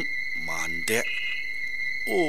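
A steady, high-pitched cricket song runs without a break, with one short vocal sound from the narrator about half a second in.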